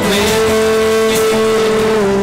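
Worship music: a man's voice holds one long sung note over guitar accompaniment.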